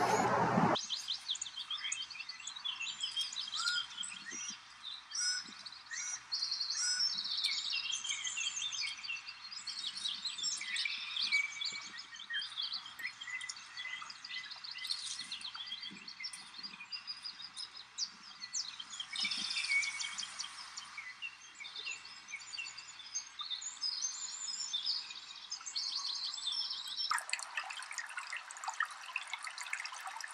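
Several small songbirds chirping and singing, with short high calls and trills overlapping. About 27 seconds in, the birds give way to the steady rush of running water.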